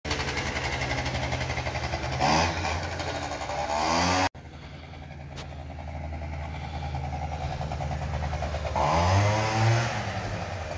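Tuned 50 cc scooter engine running with a buzzing note. It revs up sharply twice in the first few seconds, then sounds farther off and grows louder as the scooter rides back, revving again near the end.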